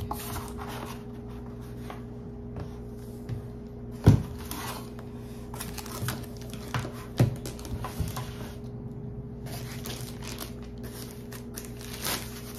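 Packaging of a laptop box being handled: paper, cardboard, foam and plastic wrap rustling and crinkling, with a sharp knock about four seconds in and a few lighter knocks a couple of seconds later. A steady low hum runs underneath.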